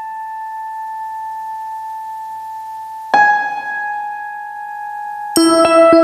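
Instrumental karaoke backing track opening with two long, slowly fading keyboard notes, the second struck about three seconds in; about five seconds in the full arrangement with a steady beat comes in.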